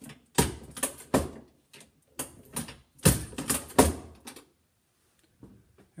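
A 12-gauge shotgun shell hull being crimped: a run of sharp mechanical clicks and clunks, about nine in the first four and a half seconds, then it stops.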